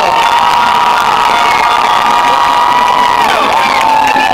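A large crowd cheering and shouting. Over it, a long, steady, high-pitched hold runs for about three seconds, then drops in pitch.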